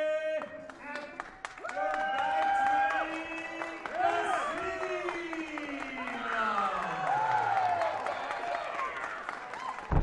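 A ring announcer's voice stretching out a fighter's name in long drawn-out tones, the last one falling slowly in pitch, over crowd cheering and applause. A sharp thump near the end.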